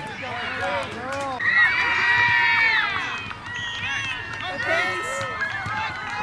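Several voices shouting and calling over one another, with one long, loud held call about a second and a half in.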